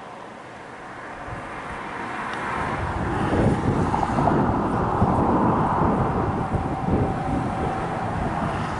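A vehicle passing on the highway: tyre and engine noise that swells over the first few seconds, holds loudest through the middle with a low rumble and a faint steady whine, then begins to fade near the end.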